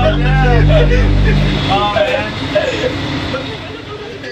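A steady low motor hum under people talking, cutting off suddenly about a second and a half in.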